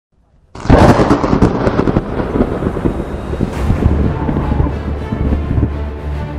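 A sudden thunderclap about half a second in, crackling sharply and then rumbling away. Music with held low notes builds up under it near the end.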